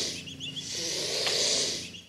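Recorded hissing played back as an angry swan: two long breathy hisses with a short break between them, and a few faint high bird chirps at the start of the second.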